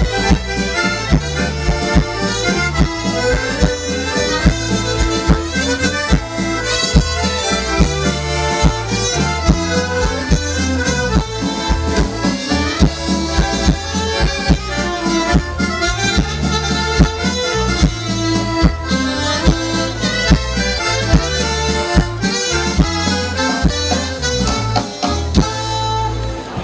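A live folk dance band playing an instrumental passage led by accordion, over a bass line and a steady beat.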